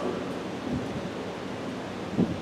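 Steady hiss of room noise through the pulpit microphone in a pause between spoken sentences, with a couple of faint soft sounds.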